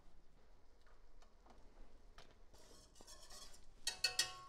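Near silence with a few faint clicks and light handling noise as a bottle of cream is uncapped, then a short knock near the end.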